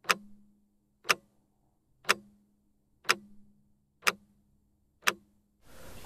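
Stopwatch ticking sound effect: six sharp ticks, evenly spaced one a second, over a faint steady hum. Another sound swells up just before the end.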